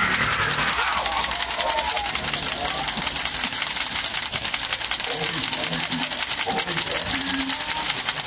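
A fast, steady mechanical clicking rattle with many evenly spaced clicks, under people's voices calling out, loudest at the start and again from about five seconds in.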